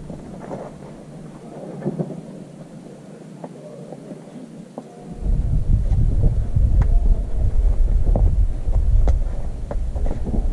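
Wind buffeting the microphone: a loud low rumble that starts suddenly about halfway through and keeps on. Faint taps and scrapes of a climber's hands and shoes on the rock sit underneath.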